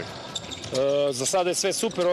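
Handballs bouncing on a sports-hall court floor during team training, a string of faint thuds, with a man's voice speaking over them from under a second in.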